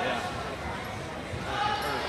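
Spectators' voices and chatter in a gymnasium, several people talking at once, with a few voices coming through more clearly near the end.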